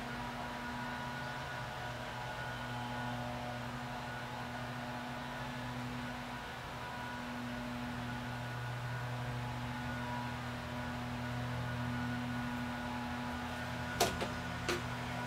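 A steady low hum with faint higher whining tones above it.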